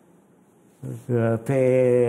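A man speaking: a short pause, then a word whose vowel is drawn out on a steady pitch.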